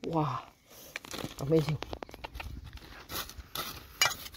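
Two short vocal exclamations, near the start and about a second and a half in, then a metal hand trowel scraping and crunching through dry soil and small stones in irregular crackly strokes.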